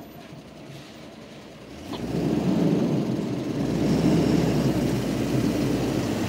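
A motor vehicle's engine rumbling close by. It comes in about two seconds in and then holds steady.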